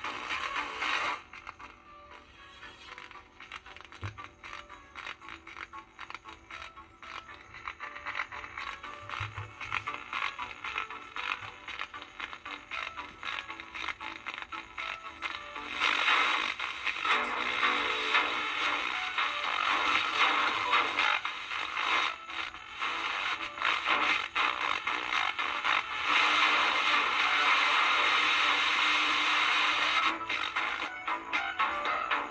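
Music relayed over a small two-transistor FM transmitter and played through a portable radio's small speaker, thin and cut off above the midrange. For the first half it is faint and scratchy while the transmitter's trimmer inductor is tuned. About halfway through it comes in louder and clearer.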